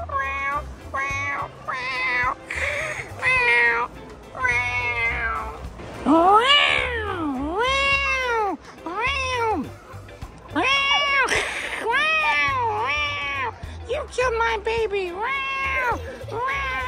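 Repeated high-pitched meowing calls, each rising and then falling in pitch, one or two a second, with a few longer, drawn-out meows in the middle.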